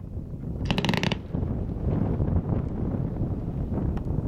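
A 9-shot 'Z' fireworks cake of green strobe willow comets going off, with a low rumble under it. About a second in comes a quick, rattling run of crackles, and a few fainter crackles come near the end.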